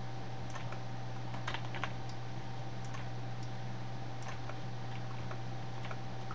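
Irregular clicks of a computer mouse and keyboard, with a quick run of clicks about one and a half seconds in, over a steady low electrical hum.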